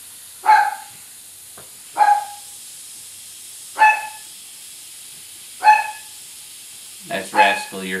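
A dog barking in the background: four single barks, one every couple of seconds.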